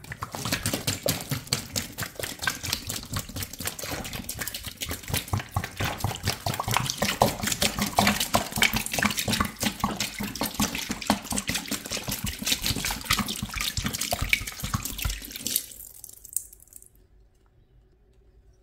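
Pine disinfectant cleaner poured from a gallon jug, splashing steadily onto sponges and suds in a plastic basin. The pour tails off about fifteen seconds in and stops.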